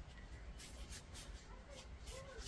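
Faint, scattered rubbing and scuffing as a piece of anti-fatigue mat foam is pressed and shaped by hand against a synthetic rifle stock.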